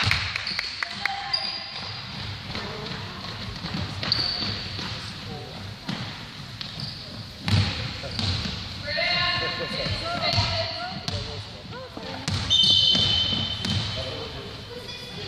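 A basketball bouncing repeatedly on a hardwood gym floor, with sneakers squeaking and players and spectators shouting. The whole is echoing in a large hall. Shouts are loudest about nine seconds in and again near the end.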